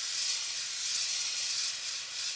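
Hand-held garden-hose spray nozzle hissing steadily as it sprays water onto a photoresist film stencil on a washout board, washing out the unexposed areas of the design; the washout is nearly finished.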